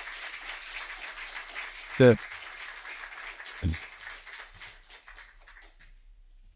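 Audience applauding, a dense patter of clapping that thins out and fades away near the end. A man's short "uh" cuts through about two seconds in.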